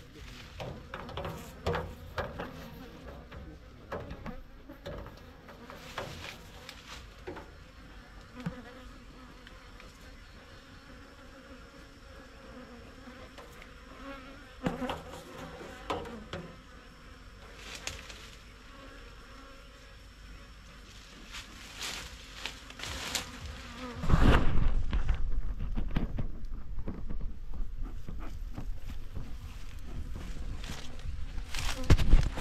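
Honeybees buzzing around an opened hive, a steady hum broken by scattered knocks and clicks as the hive is worked. About 24 seconds in, a much louder low rumble of the camera being handled takes over.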